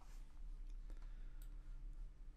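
Low steady hum with a few faint, sparse clicks from a computer mouse and keyboard in use.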